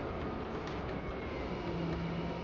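Steady running noise inside a slowly moving city bus: a continuous rumble with a low hum that grows stronger near the end.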